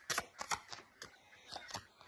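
Tarot cards shuffled by hand to draw another card: a quick run of crisp card snaps and clicks in the first second, then a few scattered taps.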